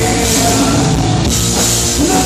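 Live rock band playing loud and steady: electric guitars and a drum kit through the club's sound system.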